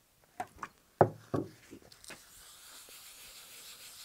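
A few light knocks and taps on a wooden workbench, the loudest about a second in, then a paper towel wet with denatured alcohol rubbing over plastic pattern sheeting: a faint, steady scrubbing as the pen marks are wiped off.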